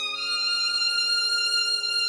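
Solo violin in a soft, slow piece, holding a long sustained note and moving to a new long note shortly after the start, with no piano under it.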